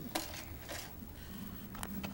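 Faint clicks and plastic handling noise from a modified Nerf blaster as its CPVC barrel is twisted into a PVC coupler, with a sharper click near the end.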